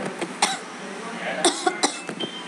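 A woman coughing: one short cough about half a second in, then a few more short coughs and throat sounds near the end.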